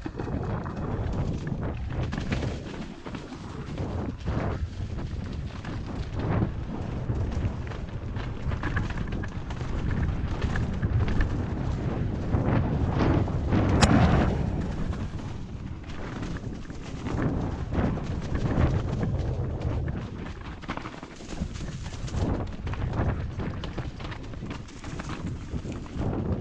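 Canyon Torque CF 9.0 mountain bike riding fast down a dirt and leaf-strewn trail, heard from an action camera on the bike or rider. Wind rumbles steadily on the microphone, and the tyres and bike clatter with many small knocks over roots and rocks. A sharp knock about fourteen seconds in is the loudest moment.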